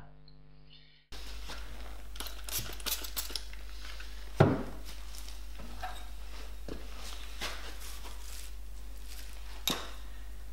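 Scattered light clinks and knocks of a steel plane blade against a diamond sharpening stone in a marble tray, the loudest about four and a half seconds in, over a steady low hum.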